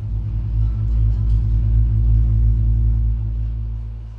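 A loud, deep synthesizer drone played live: a low rumbling bass tone held under steady higher notes, with a slight fluttering pulse. It eases off near the end.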